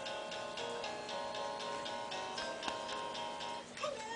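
Pink children's toy laptop playing its electronic tune: a few held beeping notes that change pitch over an even ticking beat of about four ticks a second, stopping shortly before the end.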